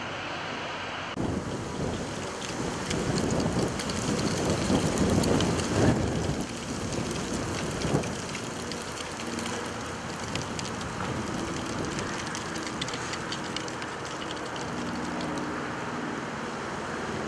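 Outdoor street background noise, a rushing rumble that grows louder a little after the start, peaks a few seconds in, then settles to a steady level.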